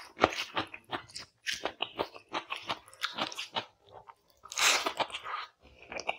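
Close-miked crunchy chewing of raw cucumber: a rapid run of crisp crunches and mouth sounds, with one louder, longer burst about four and a half seconds in.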